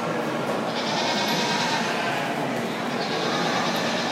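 Goats bleating over the steady background noise of an arena crowd.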